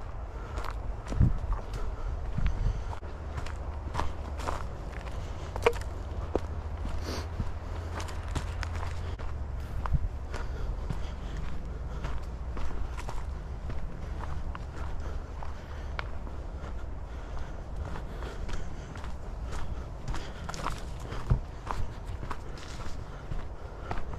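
Footsteps walking along a dirt trail littered with dry leaves and twigs, an irregular run of small crunches and snaps, over a steady low rumble.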